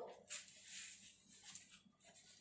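Faint scrubbing of a sponge on a bicycle wheel and tyre, a few short wiping strokes.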